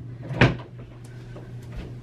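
Interior door being opened: one sharp click of the latch about half a second in, followed by a few faint clicks as the door swings open.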